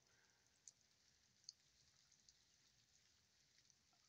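Near silence: faint steady hiss, with two tiny ticks, under a second and about a second and a half in.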